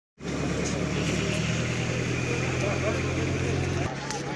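A motor vehicle's engine idling with a steady low hum, with voices in the background; the hum cuts off near the end.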